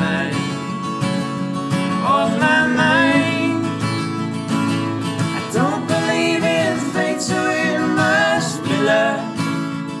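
Three acoustic guitars strummed and fingerpicked together in a folk song, with a voice singing over them in several phrases.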